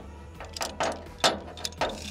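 Ratchet buckle of a lashing strap clicking as its handle is worked by hand, a few sharp, irregularly spaced clicks.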